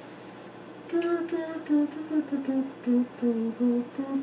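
A man humming a tune in short, separate notes that start about a second in and step gradually downward in pitch.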